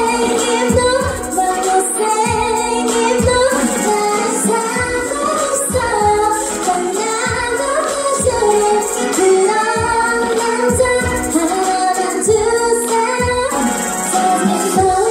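A woman singing an R&B song live into a handheld microphone, amplified in a large hall, over a backing track with a steady beat.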